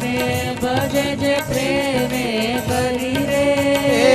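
Indian devotional kirtan: singing carried by a harmonium melody, with tabla and handheld kartal clappers striking a steady beat.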